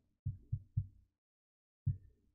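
Low, dull thumps in a quick pulsing rhythm: three in the first second, then one more near the end.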